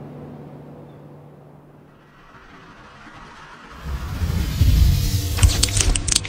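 Soft background music fading out, then a logo sound effect: a rising whoosh that swells into a deep rumble, with a burst of glitchy crackles near the end.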